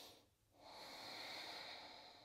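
A woman breathing faintly through her nose: one slow breath that starts about half a second in and fades out near the end.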